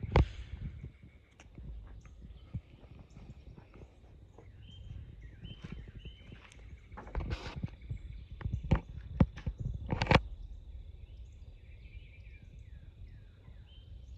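Scattered footsteps and knocks, the loudest just after the start and in a cluster about seven to ten seconds in, over faint bird chirps and a steady thin high tone that begins about halfway through.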